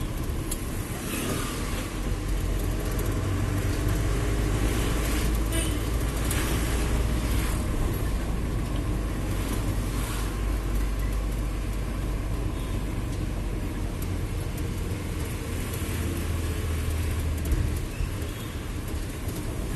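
Mahindra Bolero pickup running at low speed in town traffic, heard inside the cab: a steady low engine and road rumble. There is a brief sharp knock near the end.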